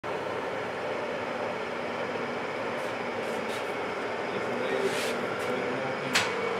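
Köpings verkstad UF10 milling machine running steadily, its motor and spindle drive giving an even mechanical hum. A few faint clicks come in the middle.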